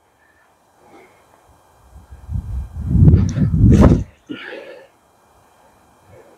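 A man's loud, breathy vocal sound close to the microphone, lasting about two seconds from around two seconds in, followed by a short, fainter murmur.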